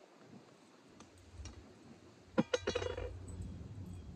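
A quick cluster of three or four sharp metallic clinks about halfway through, from a hand-held garden cultivator being handled at a wooden raised bed, over a low rumble.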